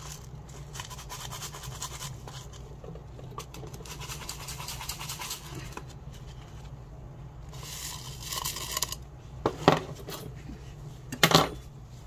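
Gritty masa potting soil being scratched and pressed in by gloved hands around succulents in a broken earthenware jar, with a short rush of grit about eight seconds in. Two sharp knocks near the end are the loudest sounds.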